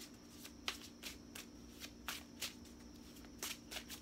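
A deck of tarot cards being shuffled by hand: a quiet run of short, irregular card clicks and slaps over a faint steady hum.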